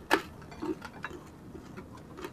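Chewing of crispy fried pork: a sharp crunch just after the start, then a few softer clicks and smacks about a second in.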